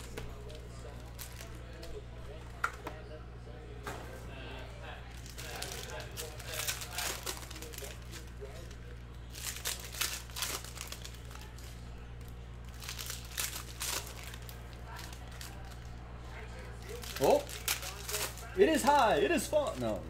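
Foil trading-card packs being torn open and crinkled by hand, in scattered bursts of crackling, over a steady low hum.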